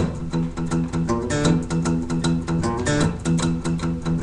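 Steel-string acoustic guitar playing a fast, repeating single-note riff on the low strings: first fret of the A string, hammer-on to the second fret, and the open fourth string.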